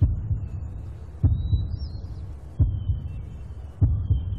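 A heartbeat-like suspense effect in the soundtrack: deep, low thuds about every second and a quarter, with a faint high held tone over them.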